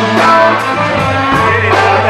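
Rock band playing, with electric guitar to the fore over bass and drums, and a woman singing.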